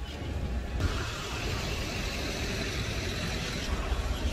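Street traffic passing close by: a low engine rumble with a steady rush of vehicle noise that swells about a second in and drops away just before the end.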